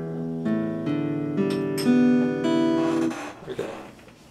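Epiphone acoustic-electric guitar played unplugged: a short run of changing chords that rings for about three seconds, then dies away.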